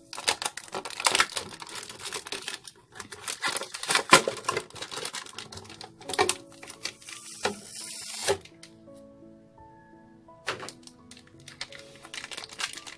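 Small plastic figure parts and packaging clicking and clattering as they are handled, with a brief rustle about seven seconds in; the clicks stop for about two seconds near the end. Soft background music plays underneath.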